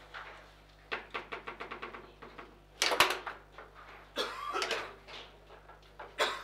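Table football in play: the ball clacks against the plastic figures and the rods knock in the table. A quick run of clicks comes about a second in, and the loudest knock about three seconds in.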